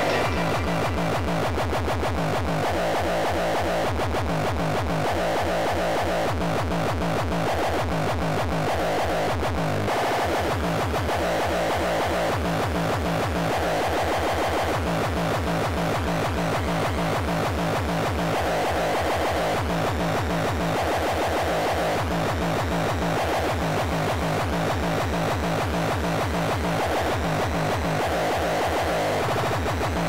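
Industrial terror hardcore track: fast, hard, distorted kick drums under melodic, screeching synth lines, steady and loud, with a brief break about ten seconds in.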